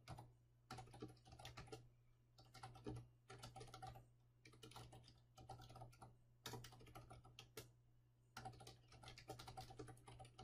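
Faint typing on a computer keyboard: quick runs of keystrokes broken by short pauses.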